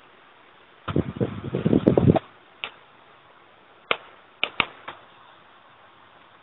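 A quick, loud run of clattering knocks lasting about a second, then five separate sharp clicks spaced out over the next few seconds, over a steady hiss.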